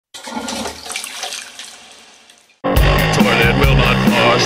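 A toilet flushing, a rushing of water that fades away over about two and a half seconds. Then a loud punk rock band kicks in abruptly.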